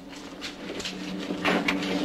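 Audio of an old comedy film soundtrack: low, steady held tones swell in about a third of the way through, with a few short knocks about three quarters in.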